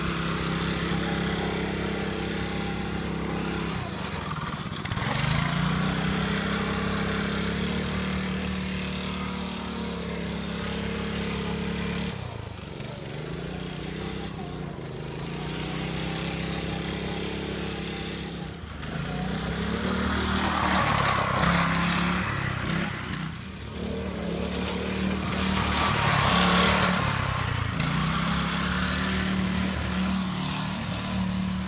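Harbor Freight Predator 212 single-cylinder four-stroke engine on a small go-kart running under load. Its revs sag and climb back again several times as the throttle is eased off and reopened. Louder rushes of noise come about two-thirds of the way in and near the end.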